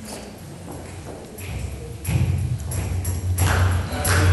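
Live music starting up: a few sharp percussive hits, joined about two seconds in by a held low bass note from an electronic keyboard that grows louder.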